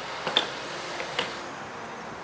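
A few light clicks in two quick pairs, made by handling at a petrol pump just after refuelling, over a steady background hiss.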